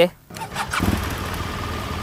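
BMW R 1200 GS Adventure's flat-twin boxer engine starting: it cranks briefly about half a second in, catches within a second and settles into a steady idle.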